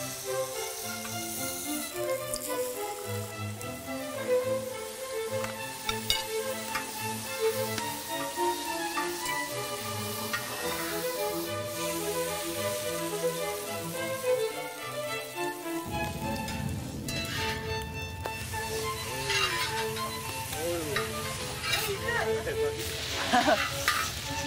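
Egg-soaked bread slices sizzling as they fry on a large black pot lid, the start of French toast, with background music playing over it.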